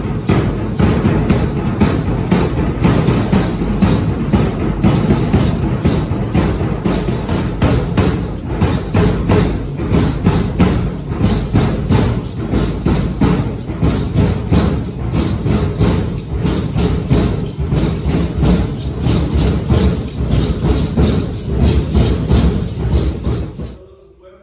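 Loud, fast, even drumbeat with rattling percussion accompanying a group of feather-headdressed danza dancers. It cuts off suddenly near the end.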